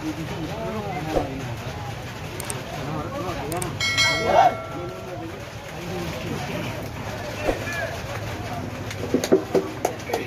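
Indistinct voices of players and spectators talking and calling out around a muddy football pitch, with one loud, drawn-out call about four seconds in and a few sharp knocks near the end.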